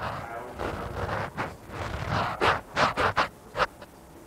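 A person's voice, distant and off-microphone, speaking in short, broken bursts: an audience member asking a question from the floor.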